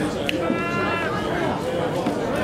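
Voices of players and bystanders talking on an open football pitch, with one drawn-out, high shouted call about half a second in that holds steady for about half a second and then drops in pitch.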